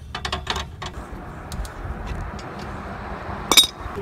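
Metal handling of a 2012 Honda Civic's scissor jack being adjusted against a wooden block: a few light clicks at the start, then one sharp metallic clink near the end.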